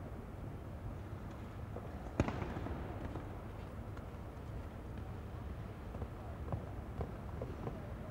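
Steady low rumble of an indoor show-jumping arena's ambience, with one sharp knock about two seconds in and a few faint ticks near the end.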